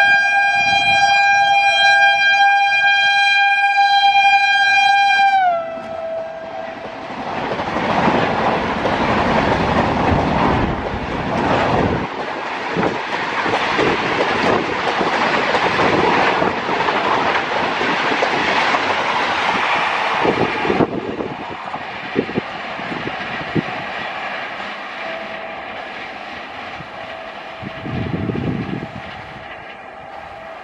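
A WAP-7 electric locomotive's horn sounding one long steady blast that drops in pitch about five seconds in as the locomotive passes at speed. Then the rush and wheel clatter of the LHB coaches going by close at about 130 km/h, with scattered clicks near the tail before the sound fades as the train recedes.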